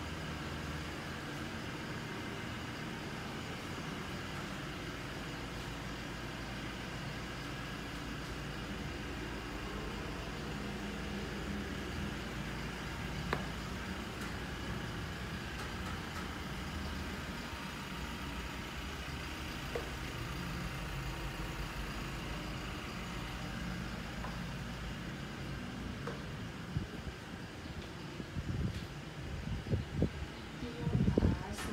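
Steady low mechanical rumble and hum, like a motor vehicle engine running, with a couple of faint clicks; a few irregular louder knocks near the end.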